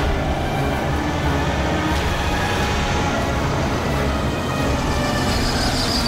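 Dramatic background music swelling into a steady, dense rushing rumble, with few clear notes.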